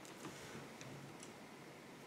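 Faint handling of paper cut-outs: a few light ticks and soft rustles as the pieces are moved and laid on a paper journal page.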